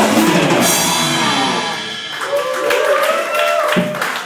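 Live rock band with electric guitar and drum kit playing the closing bars of a song, loud; about halfway through the full sound thins out to a few held notes ringing out until near the end.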